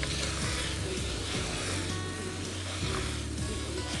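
Soft background music with steady low sustained notes, over the faint sizzle of diced bottle gourd and grated coconut being stirred with a wooden spatula in an aluminium pressure cooker pot.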